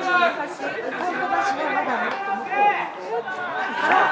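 Chatter of several voices talking at once, with no single clear speaker.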